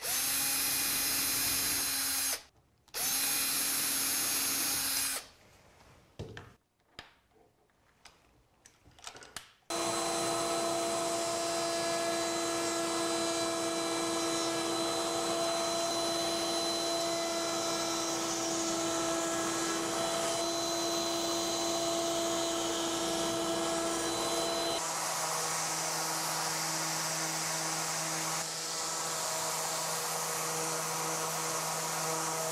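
A cordless drill runs in two short bursts of about two seconds each, pre-drilling small screw holes. After a few quiet seconds, a table-mounted router runs steadily for about fifteen seconds. Near the end the sound changes to a random orbit sander running with its dust-extractor hose attached.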